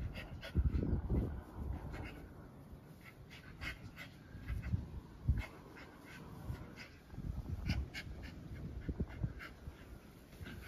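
A small dog rolling and wriggling on its back in the grass, making short, irregular rustles and dog noises that come and go.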